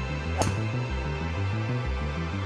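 A driver strikes a Wilson Duo Soft two-piece golf ball off a rubber tee with one sharp click about half a second in. Background music with a steady low beat plays throughout.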